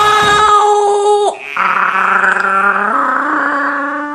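The karaoke backing track and a held sung note stop about a second in. A woman's voice then holds two long, steady notes, the second higher, with a gargling, howl-like sound.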